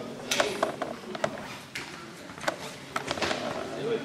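A scattering of irregular sharp clicks and taps, a few of them louder knocks, over murmuring voices in a hall.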